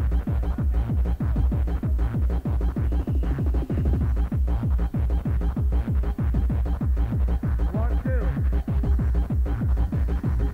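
Electronic dance music from a live club DJ set, recorded on cassette: a fast, steady beat with heavy bass and falling pitched sweeps.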